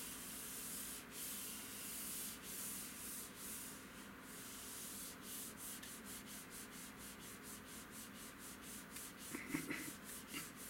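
A palm rubbing over a computer monitor's screen, a dry scratchy swishing in strokes that start slow, about one a second, and quicken to about three a second halfway through.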